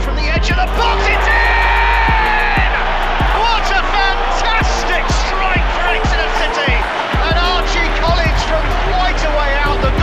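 Background music with a steady beat and heavy bass, with a voice over it.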